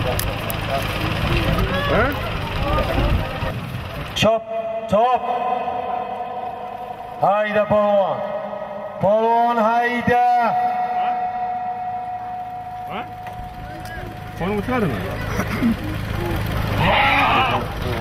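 A man's loud, drawn-out calls, the last one held on a single pitch for about four seconds. They come out of a busy open-air din, and the din returns near the end.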